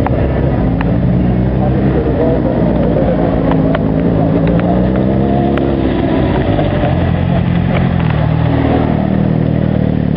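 Modified Mini race car's engine revving hard as it is driven around, its pitch climbing and falling again and again, with a few sharp clicks mixed in.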